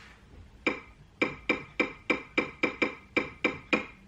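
Key-press clicks of an interactive touchscreen's on-screen keyboard as a word is typed letter by letter: about eleven short, pitched clicks, three to four a second, starting under a second in.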